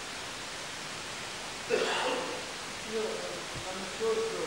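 Steady hiss of an old recording with faint, indistinct voices. A short, louder sound comes about two seconds in.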